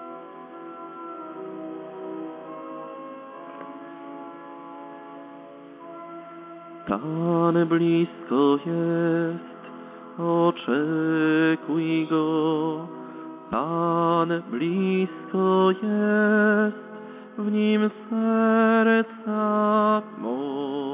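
Church music: soft sustained organ chords, then from about seven seconds in a louder melody with strong vibrato in short phrases over a steady low note.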